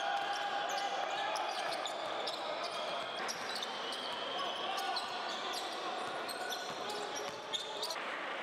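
Basketball game sound in an arena: steady crowd noise with a ball being dribbled on the hardwood court and short sharp sounds of play throughout.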